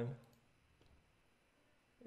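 A faint mouse click about a second in, otherwise quiet room tone after the tail of a spoken word.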